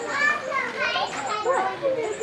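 Several children's high-pitched voices talking and calling over one another.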